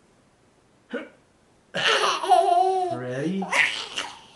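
A toddler's loud, high-pitched squealing laugh, lasting about two seconds from halfway in, as he is bounced up high by a parent lying beneath him.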